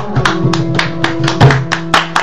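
Instrumental passage of Punjabi folk music: a hand drum struck rapidly, about five strokes a second, over steady held notes, with a heavier stroke about a second and a half in.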